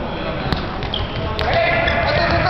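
A futsal ball struck twice on a sports-hall floor, two sharp knocks about a second apart that echo in the hall, with a short shoe squeak between them and players' voices calling out in the second half.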